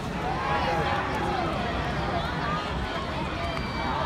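Baseball crowd in the stands chatting, many voices overlapping into a steady babble with no single voice standing out.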